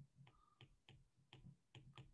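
Faint, irregular ticks of a pen stylus tapping on a tablet screen while words are handwritten, about six in two seconds.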